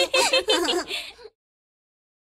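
Cartoon children giggling in short, wavering bursts that die away about a second in, leaving dead silence.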